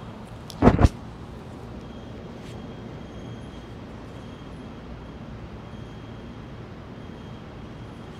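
A short loud thump less than a second in, a body coming down from a wheel-pose backbend onto a yoga mat, over a steady low background rumble.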